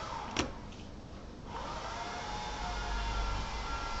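A ruler and pencil handled on drafting paper on a tabletop, with one light tap about half a second in. From about a second and a half in, a low rumble and rustle come in close to the microphone as the drafter leans over the pattern.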